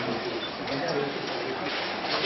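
Indistinct chatter of many voices in a crowded room, with no single voice standing out.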